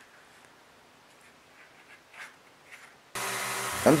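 Faint handling of the Kydex sheath and wood block, with a couple of light ticks. About three seconds in, the steady running noise of a belt grinder cuts in suddenly and holds level, as the sheath mouth goes to the belt for shaping.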